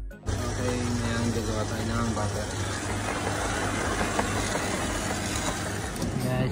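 Background music cuts off abruptly just after the start, giving way to a steady low hum and noise with faint, indistinct voices.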